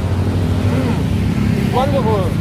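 Street traffic: motorbike and car engines passing as a steady low rumble, with brief faint voices near the end.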